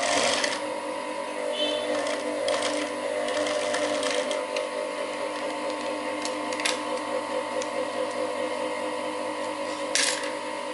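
Industrial sewing machine running steadily as it stitches knit fabric, with a few sharp clicks.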